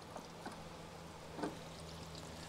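Water trickling out of the just-opened pressure-relief valve of an Atwood aluminum RV water heater as the tank starts to drain, with a few faint ticks.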